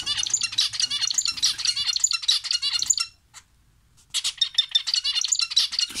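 Zebra finches chirping: a quick, dense run of short high calls that stops for about a second just after the middle, then starts again.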